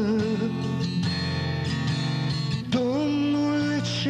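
A young man singing a slow Romanian song live, with guitar accompaniment. A held, wavering sung note opens it, then the guitar plays alone for about a second and a half, and near the end the voice comes back with a long held note.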